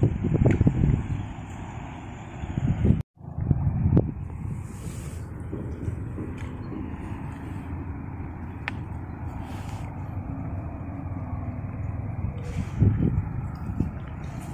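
Wind buffeting a phone's microphone as a low, fluctuating rumble. It is stronger in the first second or so and cuts out for an instant about three seconds in, with a few faint clicks.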